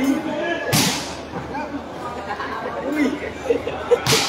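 Spectators chattering throughout, with one sharp smack of a volleyball being hit about three-quarters of a second in.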